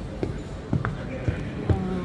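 A handful of short, sharp thumps and knocks, about five in two seconds, with indistinct voices behind them.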